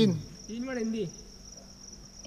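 Crickets chirping in a steady, continuous high trill, with a voice trailing off at the start and a short spoken word or call about half a second in.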